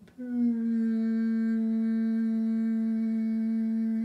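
A man humming one steady note, held flat for almost four seconds, in imitation of a constant, slightly high-pitched hum that he hears around his neighbourhood.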